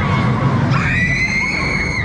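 Riders screaming on the Twistatron spinning thrill ride, with one long, high scream held from a little under a second in.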